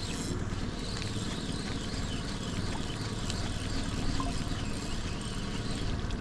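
Boat's outboard motor running steadily at trolling speed, a low even hum.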